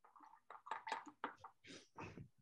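Faint mouth and lip clicks, then a breath drawn in just before speaking.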